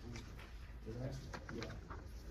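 A low voice murmuring indistinctly in short, soft sounds, with a few faint clicks.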